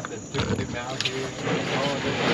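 Speech: a person talking, starting about half a second in.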